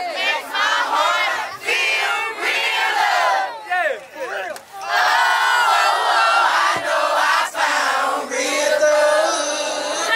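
A crowd of many voices singing together loudly, with no backing beat, dipping briefly about four seconds in.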